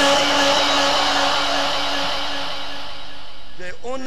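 A man's voice through a microphone and loudspeaker, holding one long drawn-out note that fades slowly; ordinary speech resumes near the end.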